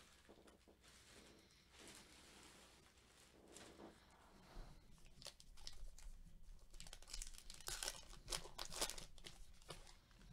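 A baseball card pack's wrapper is torn open and crinkled by gloved hands: a run of sharp, crackly tearing and crumpling sounds that starts about halfway through and is thickest near the end.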